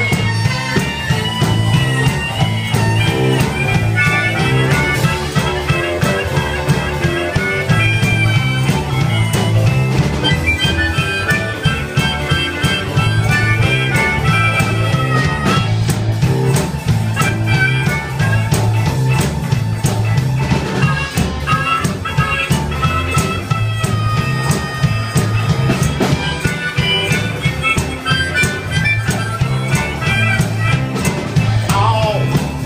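Live blues band playing an instrumental passage, with a harmonica solo of bending, wavering notes over electric bass, drums and guitar.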